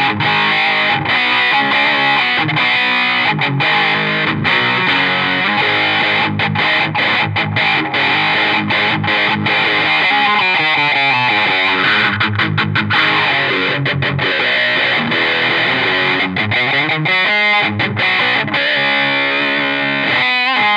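Distorted electric guitar played through a Marshall amp and a modulation pedal set for a Uni-Vibe-like wobble, strumming chords and riffs. The wavering in the tone is plainest about halfway through and again near the end.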